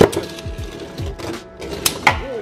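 Two Beyblade Burst tops ripped from their launchers at once, then spinning and skittering on a plastic stadium floor, with a sharp clack near the end as they strike. Background music plays throughout.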